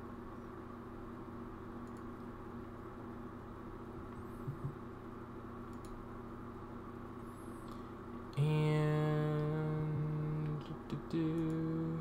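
A faint steady electrical hum underneath. About eight seconds in, a man hums one low steady note for about two seconds, then a shorter, slightly higher hum near the end.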